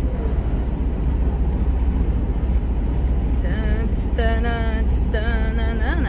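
Steady low drone of a heavy truck's diesel engine and tyre noise heard inside the cab while cruising on the highway. A voice comes in over it a little past halfway.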